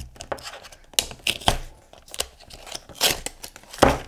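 Foil and plastic wrapping of a toy blind pack being torn open and crinkled by hand, with irregular crackles and sharp clicks, and a louder knock near the end.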